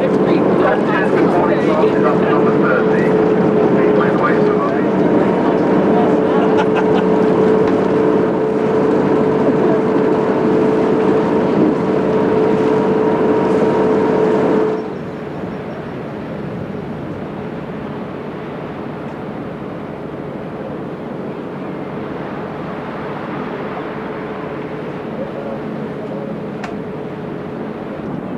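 Boat engine running with a steady drone and hum. A little past halfway it drops abruptly to a quieter, equally steady drone.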